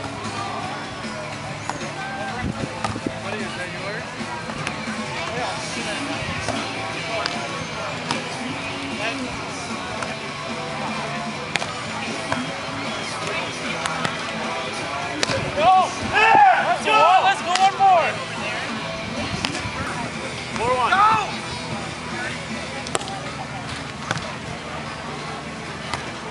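Outdoor beach volleyball ambience: a steady background of crowd chatter and music, with occasional sharp hits of the volleyball. Loud shouts from the players come in a run about sixteen seconds in and once more a few seconds later.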